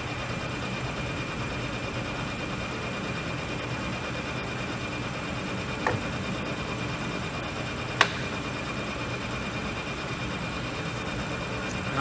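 Clausing Colchester 15-inch lathe running under power at about 625 RPM: a steady hum from the headstock gearing with an even high whine over it. Two sharp clicks, about two seconds apart near the middle, come from the apron levers being worked.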